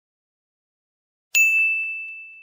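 A single bright ding struck once near the end, like a small bell or chime, ringing on one high tone and fading slowly.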